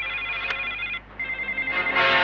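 Desk telephone ringing with an electronic trill, breaking off briefly about a second in and then ringing again.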